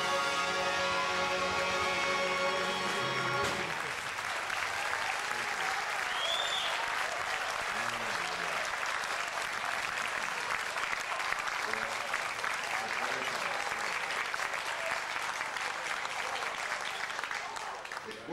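Big band holding the final chord of a swing song, which cuts off about three and a half seconds in, followed by sustained audience applause.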